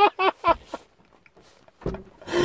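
A man's high-pitched laughter, a quick run of short notes, ending about half a second in; then quiet, and a single thump near the end.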